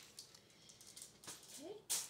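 Faint rustling of crumpled aluminum foil being handled and put aside, with a short rising hum of voice and a sharp click near the end.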